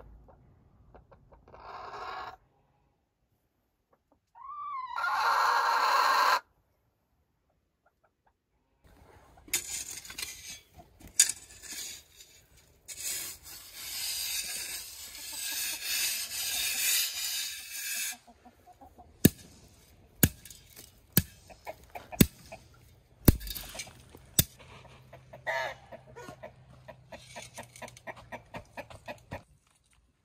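A rooster crows once, loud and about two seconds long, after a short chicken call. Later a shovel scrapes through gravelly dirt for several seconds, followed by a run of sharp knocks about once a second.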